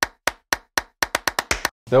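Editing sound effect over an animated title card: a run of about ten sharp, dry clicks, four evenly spaced and then six more at twice the pace, stopping just before the end.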